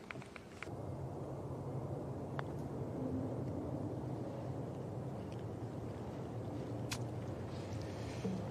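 Steady outdoor ambience with a low rumble while a golf putt is played. A faint tap comes a couple of seconds in as the putter strikes the ball, and a sharper click comes near the end as the ball reaches the hole.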